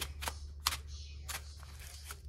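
A small cardboard knife box being handled and opened: four sharp clicks and taps.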